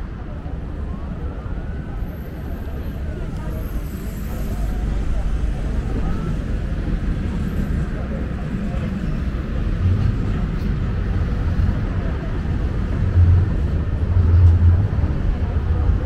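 Road traffic rumbling steadily, with people talking close by; the low rumble grows louder through the second half, swelling most strongly near the end.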